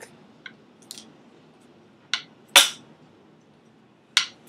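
A small wooden model mangonel catapult with a twisted-string torsion spring being fired: a few light clicks and taps, then one sharp, loud snap about two and a half seconds in.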